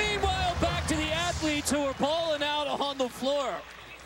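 A voice in drawn-out phrases over steady arena crowd noise, dropping off shortly before the end.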